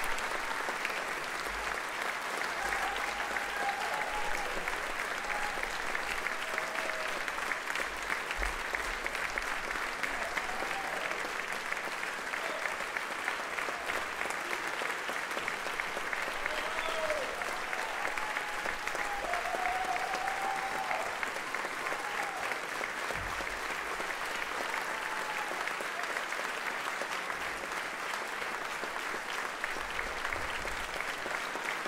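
Theatre audience applauding steadily, with a few voices calling out over the clapping.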